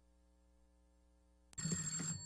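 Near silence with a faint electrical hum, then, about one and a half seconds in, a sudden ringing with several steady high tones that carries on to the end.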